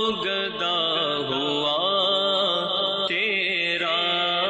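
A man singing an Urdu naat, a devotional poem in praise of the Prophet, in long melodic held notes. A new sung line begins about three seconds in.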